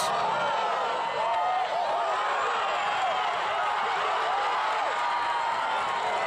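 Stadium crowd noise: many voices cheering and shouting at once, overlapping into a steady level.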